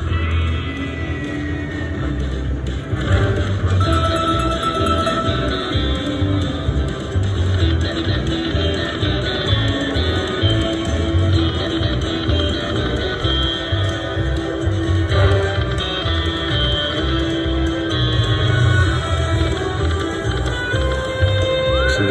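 Buffalo video slot machine playing its free-games bonus music without a break while the reels spin and small wins add up.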